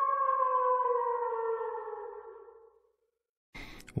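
Intro sting for a logo card: a held tone with several overtones that slowly slides lower in pitch and fades out about three seconds in, followed by a short silence.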